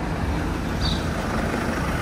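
A car running at low speed close by as it comes through the square: a steady low rumble.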